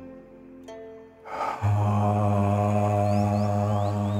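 Soft background music with a few plucked string notes, then from about a second and a half in a man's long, steady, low voiced 'aah' held for about three seconds. It is the out-breath of a tai chi breathing exercise, voiced while relaxing.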